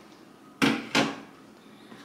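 Two sharp knocks about half a second apart: kitchenware, such as a glass mason jar or a bowl, being set down or bumped on a kitchen countertop.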